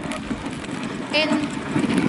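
A team of sled huskies howling and yelping: high, wavering calls starting about a second in, over a low steady noise.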